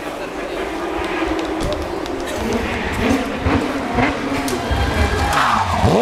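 A rally car's engine approaching at speed and growing louder amid spectator chatter, its engine note falling sharply in the last second as the car slows for the bend.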